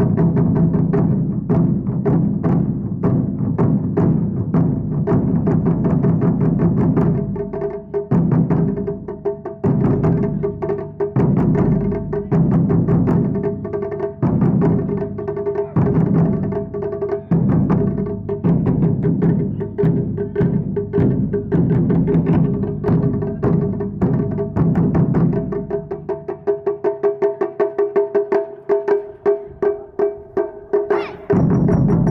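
Japanese taiko ensemble drumming: barrel-shaped nagado-daiko and a large drum struck with wooden sticks, with small shime-daiko keeping a fast beat. The playing is dense and loud with accented breaks. Near the end the deep drums drop out, leaving lighter, quicker strikes.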